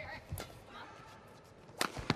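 Badminton shuttlecock struck by rackets: a sharp crack about a third of a second in and a louder one near the end.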